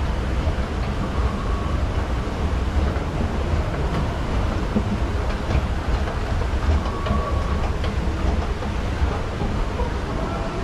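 Airport escalator running as it carries a rider down: a steady low mechanical rumble with a light rattle.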